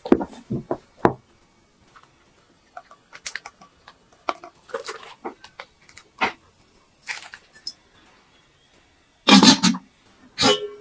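Close-up soft squelching and light tapping of thick egg batter being folded with a silicone spatula in a glass bowl and then piped into a pan, in short separate bursts. Near the end a louder clatter of about half a second as the lid goes onto the pan.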